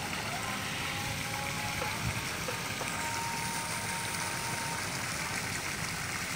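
Steady splashing of pond water as a hooked bawal (freshwater pomfret) thrashes at the surface on the line, with a faint thin tone about halfway through.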